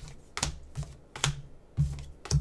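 Four sharp clicks or taps, about half a second apart, each with a dull low thud under it.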